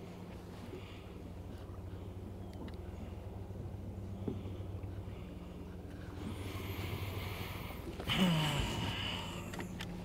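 Steady low hum of a motor, with a rise of hiss a little past the middle and a short, falling grunt about eight seconds in.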